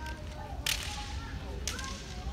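Bamboo shinai striking, two sharp slapping cracks about a second apart, over faint shouting voices echoing in the hall.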